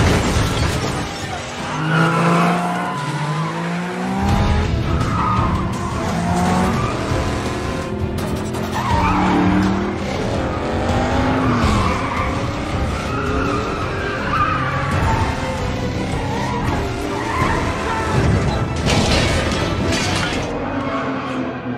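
Movie car-chase sound mix: car engines revving and tyres squealing over an orchestral action score. A car crashes through glass right at the start.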